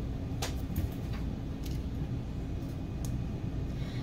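Steady low hum of room noise with a few faint, short taps and rustles of cardstock die-cut pieces being handled on a craft mat.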